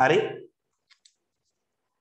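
A man says one short word, then near silence with two faint clicks about a second in.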